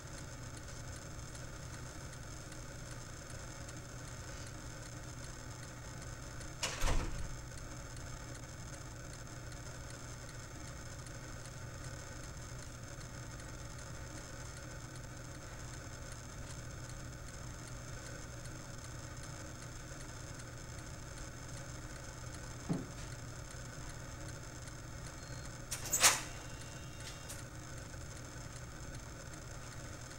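Steady low hum with a few faint high tones, broken by a short knock about seven seconds in and a louder one near the end, with a fainter tap a few seconds before it.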